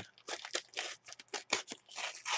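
Foil trading-card pack wrapper being torn open by hand: a quick, irregular run of crinkling rips and crackles.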